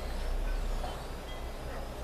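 Steady background noise with a low hum, and a few faint, brief high tones like distant chimes.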